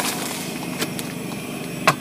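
Portable butane gas stove burner hissing steadily, with a couple of light clicks and a sharp metal knock near the end as a steel wok is lifted off the stove's pot supports.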